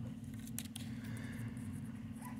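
Faint clicks from the plastic plugs and leads of a small RC receiver board being handled by hand, a few light ticks about halfway through, over a steady low hum.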